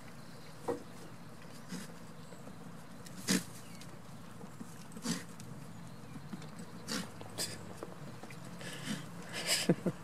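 Goat kids' hooves knocking on wooden logs and stumps as they jump about: several short, sharp knocks scattered a second or two apart, one of the loudest about three seconds in. A person laughs at the very end.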